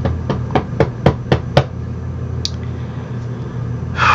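Suspense sound effects from a movie trailer: a run of sharp knocks, about four a second, growing louder and stopping about a second and a half in, then a brief high beep, over a steady low hum.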